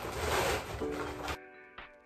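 Background music, with a rustling noise from a mattress being handled on a bed frame through the first second and a half, which cuts off abruptly.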